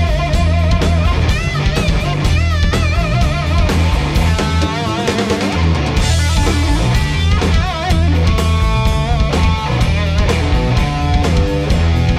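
Electric guitar played through a Tone King Sky King tube amp, taking a lead over a band with drums and bass. The guitar plays held, bent notes with wide vibrato, has a driven tone, and keeps going without a break.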